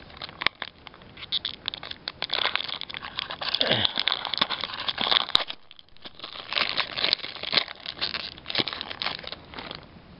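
Foil wrapper of a Pokémon trading-card booster pack being torn open and crumpled by hand: dense crinkling and crackling, with a short lull just before the six-second mark.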